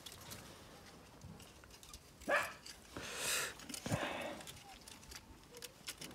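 Shiba Inu puppies giving a few short whimpers and yips, about two and four seconds in, with soft rustling, as one puppy is held down for a vaccine injection.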